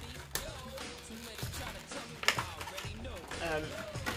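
Plastic and cardboard packaging being handled as a Funko Pop figure is pushed back into its window box, with two sharp clicks about two seconds apart.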